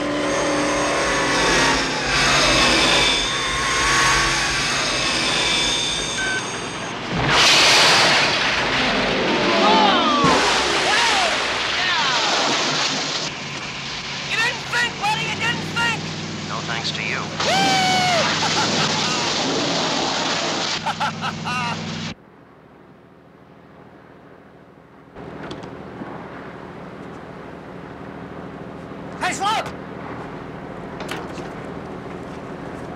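Television soundtrack of a car sequence: a car engine running hard amid a dense mix of sound effects, dropping suddenly to a much quieter scene about three-quarters of the way through.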